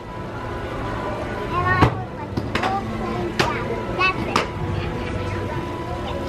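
Scattered voices of people talking over a steady background, with a thin, constant high tone running underneath.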